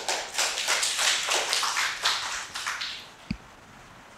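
Audience applauding, dying away about three seconds in, followed by a single sharp knock.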